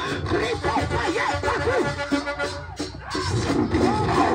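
Loud live worship music played through loudspeakers, with a steady bass line and a voice singing over it.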